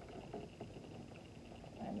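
Faint handling noise from a baby swing being assembled: light clicks and rubbing of the plastic seat against its wire frame legs.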